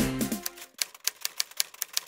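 Background music fading out over the first half second, then a typewriter key-click sound effect: a quick run of sharp clicks, about six a second.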